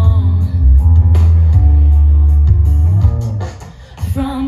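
Live indie-pop band playing an instrumental gap between sung lines, with heavy bass guitar and guitar. The band drops away to a quieter moment near the end.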